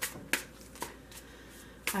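A deck of tarot cards being shuffled by hand, with a few sharp snaps of the cards.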